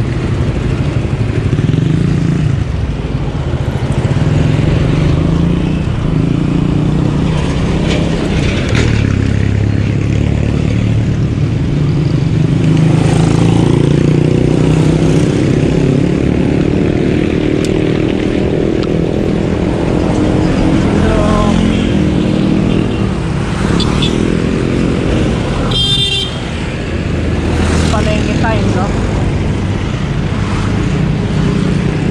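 Roadside traffic beside a moving bicycle: motorcycles and cars running close by, their engine pitch sliding up and down as they pass. A vehicle horn sounds briefly near the end.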